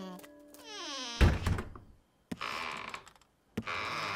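Cartoon sound effects: a falling glide in pitch ends in a loud thunk about a second in, followed by short scratchy noises.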